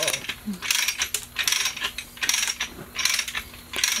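Ratchet clicking in short bursts of rapid clicks, about every three-quarters of a second, from the hoist gear holding the giant pumpkin as it is worked.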